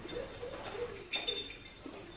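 Faint, short voice-like sounds come and go, with a sharp click about a second in.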